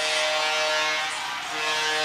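Arena goal horn sounding one long steady note over a cheering crowd, signalling a home-team goal; the horn dips briefly near the end and comes back.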